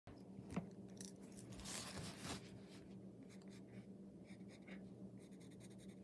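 Pencil scratching on a paper plate in short drawing strokes, with a sharp tap about half a second in and a quick run of small ticks near the end. A faint steady hum lies underneath.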